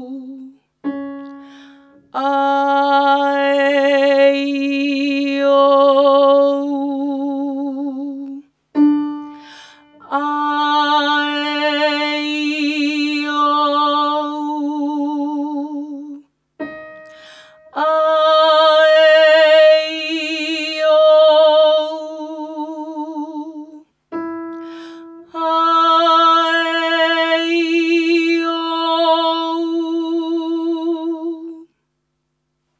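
A trained female voice sings four sustained notes with vibrato, each about six seconds long and each a step higher, moving through vowels on each note. A short piano note gives the pitch just before each phrase. It is a vocal exercise on vowels with diaphragm support and forward 'mask' placement, and the tone is full and clear.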